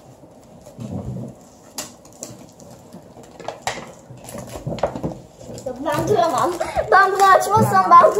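Scissors snipping and plastic shrink-wrap rustling as a wrapped box is cut open: a few separate sharp clicks with soft crinkles between them. A child's voice comes in over it from about six seconds in.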